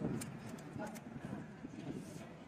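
A few light clicks as Mentos mints are handled and dropped into an open can of Coca-Cola on a tabletop.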